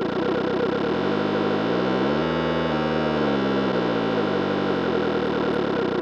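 Electronic groovebox music from a Synthstrom Deluge and a Polyend Tracker playing together in time, a steady repeating synth pattern. A low synthesizer tone slides up in pitch about a second in, holds, then slides back down near the end.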